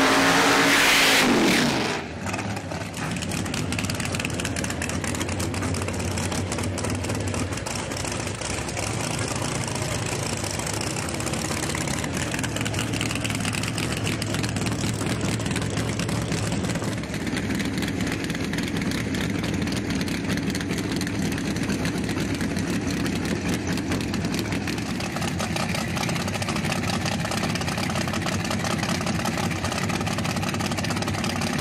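A drag race car's engine at full throttle in a tyre-smoking burnout, its pitch falling away about two seconds in. After that the engine idles steadily as the car is readied and staged at the start line.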